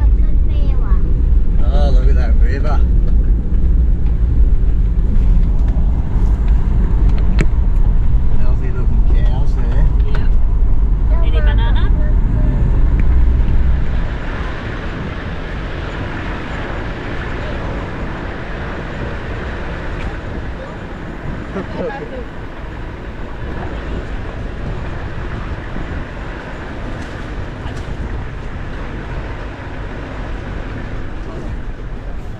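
A 4x4 vehicle driving on a rough dirt track, with a heavy low rumble that drops off suddenly about halfway through, leaving a lighter, steadier running noise.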